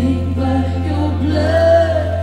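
Live worship band playing, with several voices singing together over a steady held low note.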